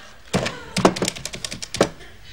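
Corded telephone being picked up and dialled: a string of sharp clicks and knocks from the handset and buttons, the loudest about a second in and again near the end.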